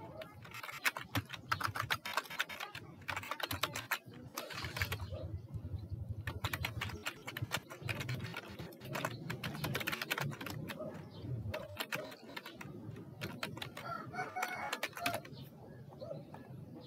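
Typing on a computer keyboard: quick runs of key clicks with short pauses between words as a sentence is typed.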